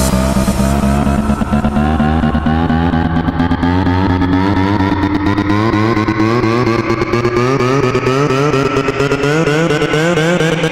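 Electro house music: a wavering synth line that climbs slowly in pitch through a build-up, with the bass thinning out after the first few seconds.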